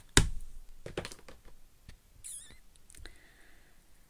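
Handling of stamping supplies on a craft desk: a sharp click just after the start, a few light taps about a second in, and a brief wavering high squeak about two seconds in.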